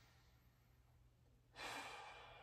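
Quiet room tone, then about one and a half seconds in a man lets out a long breath, a sigh that fades slowly.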